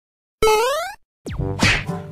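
Edited-in cartoon-style sound effect: a bright tone that holds for a moment and then glides upward, lasting about half a second. After a short silence, a quick falling swoop leads into music.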